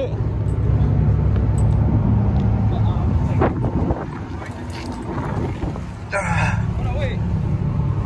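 Nissan 350Z's 3.5-litre V6 idling steadily, heard close up.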